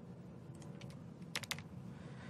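Computer keyboard keystrokes: a few light taps, then three quick ones about a second and a half in, over a faint steady hum.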